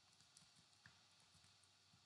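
Near silence: room tone with a few faint, irregular taps.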